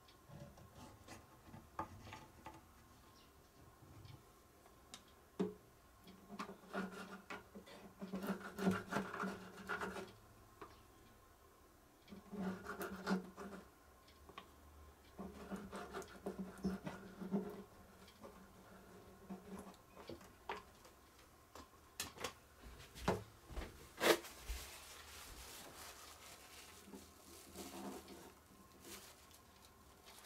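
Faint clicks and scrapes of a small hand tool spreading glue in an acoustic guitar's neck-joint mortise, with one sharper click about two-thirds through. A low steady hum comes and goes in several spells of one to four seconds.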